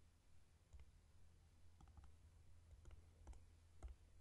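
Faint, irregular clicking from a computer's input as an entry is keyed into calculator software: about half a dozen separate clicks, the loudest near the end.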